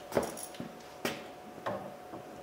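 Three short clicks and knocks, well under a second apart, from a socket driver and extension being handled and set against a truck's door panel.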